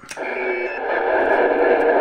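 Cobra 148 GTL SoundTracker CB radio: a click, then a steady hiss of receiver static from its speaker as the channel falls open after a transmission ends.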